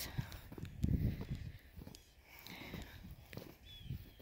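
Footsteps crunching in snow close to the microphone: a few soft low thumps, the loudest about a second in, then quieter.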